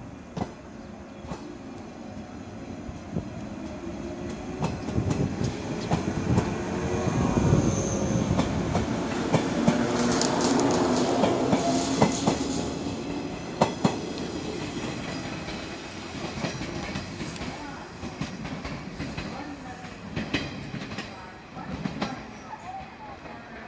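JR West 103 series electric train accelerating away from a station: its traction motors whine, rising in pitch as it gathers speed, while the wheels clack over rail joints. The sound grows to a peak about halfway through, then fades as the train pulls away.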